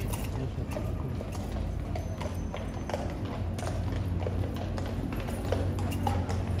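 A horse's hooves clip-clopping on hard ground in irregular steps, over a steady low rumble and background voices.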